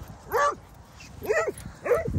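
A dog giving three short, high barks while play-chasing: one near the start, then two more close together in the second half.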